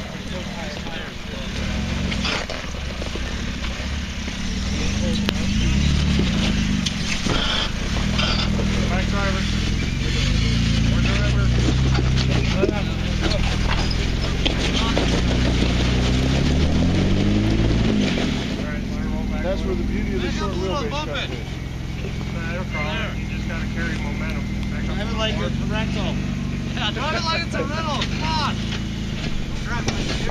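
Jeep Wrangler engine running at low revs as it crawls over rocks, with a rise in revs about two-thirds of the way through that drops back sharply; people talk nearby.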